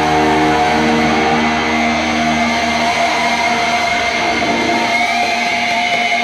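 A final distorted electric guitar and bass chord rings out and fades about two to three seconds in. It leaves a steady high amplifier feedback whine over a loud noisy hiss, the whine rising in pitch near the end.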